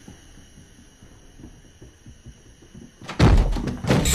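Faint steady background, then about three seconds in a sudden loud thud followed by a quick run of knocks.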